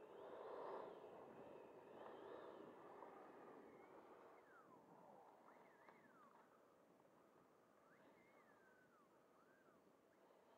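Near silence: faint outdoor ambience, with a few faint whistled bird calls gliding downward in the second half.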